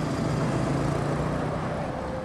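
Road traffic noise with a steady low engine hum.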